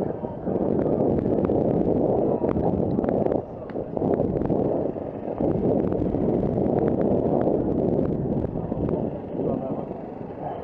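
Helmet-camera recording of a Giant Reign mountain bike rolling over grass and dirt: a steady rumble of wind and tyre noise on the microphone, with scattered sharp clicks and rattles from the bike.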